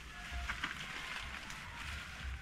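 Faint crackling and rustling of dry banana leaves and brush as someone moves through a thicket, over a low pulsing rumble.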